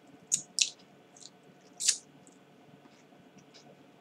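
Four short, sharp crackles or clicks in the first two seconds, the last a little longer than the others, over a faint room hum.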